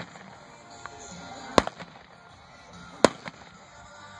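Two sharp gunshots about a second and a half apart: a mounted shooter firing blank-loaded revolver rounds at balloon targets from horseback.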